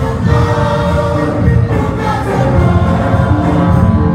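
A choir singing, with notes held and moving in steady succession.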